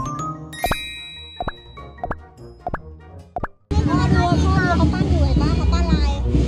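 The tail of a cartoon-style intro jingle: a held tone fading under about six sharp, ringing pops. At about 3.7 s it cuts abruptly to loud music with strong bass, mixed with people's voices.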